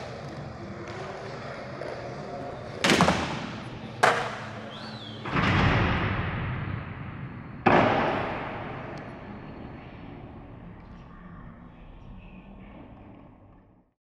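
Outro logo-sting sound effects: a few sharp, heavy hits about a second or two apart, the third swelling and holding a little longer. The last hit fades slowly away to silence near the end.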